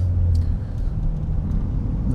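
Steady low rumble of a car's engine and tyres heard inside the cabin while driving in slow city traffic, a little louder in the first half second.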